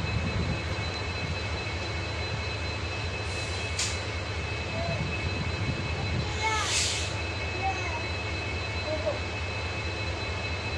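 A diesel passenger train standing still with its engine idling: a steady low hum with a high steady whine above it. There is a short click a little before the middle and a brief hiss just after, with a few faint short chirps over the top.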